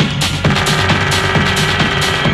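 Techno music from a DJ mix: a steady driving beat of about two kick drums a second, with synth tones that come in about half a second in.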